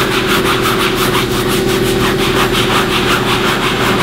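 Soft-bristle hand brush scrubbing a wet canvas convertible top with all-purpose cleaner, in quick repeated scratchy strokes, about six a second, over a steady low machine hum.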